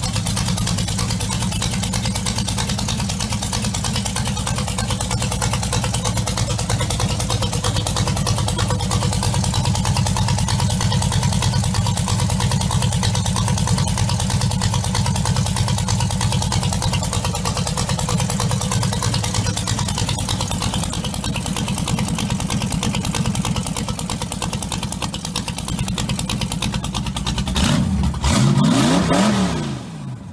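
Rat rod pickup truck's engine idling with a steady, fast pulsing exhaust, then revved up and back down near the end.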